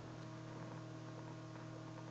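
A faint, steady electrical hum made of several unchanging low tones, over a light background hiss.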